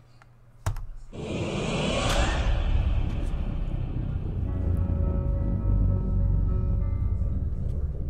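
Film soundtrack: after a click about a second in, a rushing swell builds and settles into a steady low rumbling drone with faint held tones, a dark music-like score.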